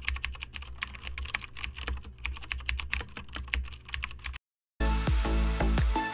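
Keyboard typing sound effect: a quick, irregular run of key clicks over a low hum, stopping about four and a half seconds in. After a brief gap, music starts near the end.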